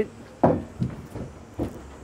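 A skid hitch attachment being set down inside a pickup's truck-bed toolbox: one sharp knock about half a second in, then a few lighter knocks as it settles.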